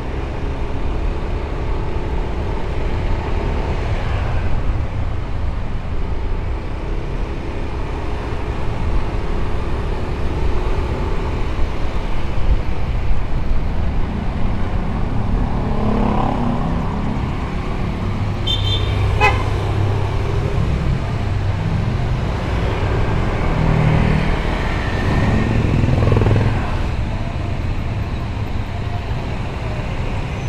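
Motorcycle engine running at low city speed with road and traffic noise, its note rising as it picks up speed a couple of times. A short high-pitched horn beep sounds about two-thirds of the way through.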